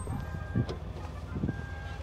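Hands-free power tailgate of a 2019 BMW X5 closing on its own, a low steady motor hum with two short steady warning beeps about a second apart.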